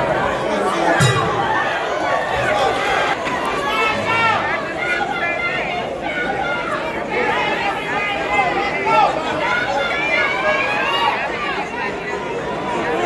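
Spectators chattering, many voices talking over one another at once.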